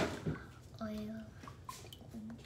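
Vegetable oil pouring from a plastic jug into a glass measuring cup, a faint liquid stream, with a sharp click at the start and a short hummed voice about a second in.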